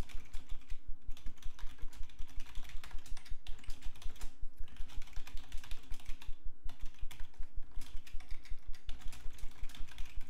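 Computer keyboard being typed on steadily, quick runs of key clicks broken by a few short pauses.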